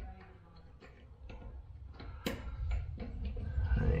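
Scattered small clicks and taps of faucet parts being handled and fitted onto the faucet body by hand, with one sharper click a little past halfway.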